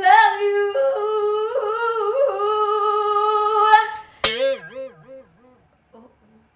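A woman singing one long, high held note with a wobbling vibrato for nearly four seconds, which stops abruptly. Then a sharp click and a shorter wavering tone that dips over and over and sinks in pitch as it fades.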